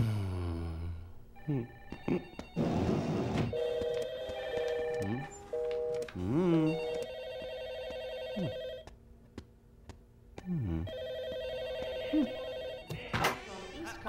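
Electronic office telephones ringing in repeated trilling bursts, several rings overlapping. Short sliding sounds and two brief noisy bursts in the first few seconds.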